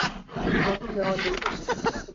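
Loud rough rustling and scraping of a person getting up from a chair close to a video-call microphone, with a voice mixed in.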